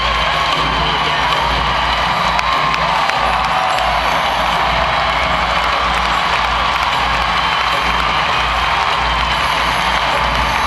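Music over an arena's loudspeakers, with a crowd cheering and shouting along throughout.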